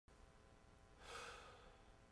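Near silence with one soft sigh-like exhale about a second in.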